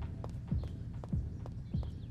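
Footsteps walking away at a steady pace on stone paving, one step about every 0.6 seconds, each a dull thud with a sharp click.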